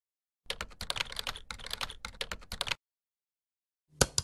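Computer keyboard typing: a rapid run of key clicks lasting about two seconds, starting about half a second in.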